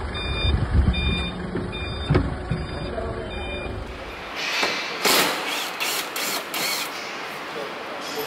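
A vehicle's reversing alarm beeping about every 0.7 s over a running truck engine. After a cut, a run of sharp knocks and rustles.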